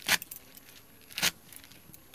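Ghatkol leaves sliced against the fixed curved blade of a boti (Bengali floor cutter): two sharp, crisp cuts about a second apart, with fainter leaf rustles between.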